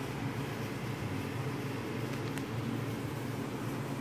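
A steady low mechanical hum under a faint even hiss, with one faint tick a little past halfway.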